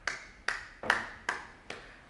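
One person clapping hands: about five sharp claps at an even, unhurried pace, a little over two a second.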